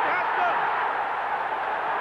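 Football stadium crowd cheering as a goal goes in, a steady mass of noise on an old television match recording.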